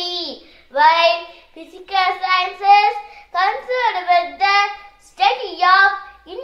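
A boy's voice speaking in short, emphatic phrases with brief pauses between them.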